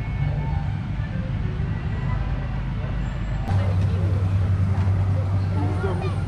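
Outdoor amusement-park ambience: a low rumble with faint distant voices. About halfway in, an abrupt change brings a louder, steady low hum and more voices.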